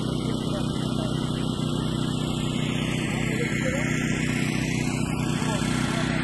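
A motor engine running steadily at a constant speed, a continuous even hum, with people talking in the background.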